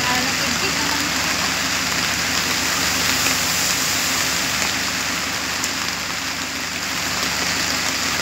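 Rain falling steadily, a dense even hiss.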